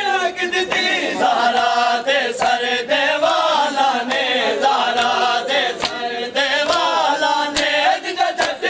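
Men's voices chanting a noha, a Shia lament, in chorus. Sharp slaps of open hands striking bare chests (matam) cut through the chant every second or so.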